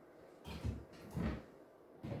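Two soft knocks of a wooden chopping board being set down and shifted on a kitchen worktop, about half a second apart.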